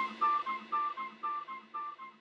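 Background music: a quiet plucked figure alternating between two notes, several a second, fading away.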